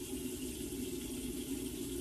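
A bathroom tap running steadily into the sink.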